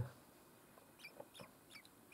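Faint, thin cheeping from downy common kestrel nestlings under a week old: three or four short calls, each falling in pitch, starting about a second in.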